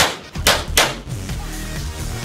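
Three pistol shots in quick succession in the first second, the last of a string, followed by background music alone.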